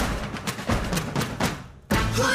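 Dramatic percussive music sting for a score reveal: a quick run of drum hits, about four a second, dies away, then one sudden loud hit just before the end.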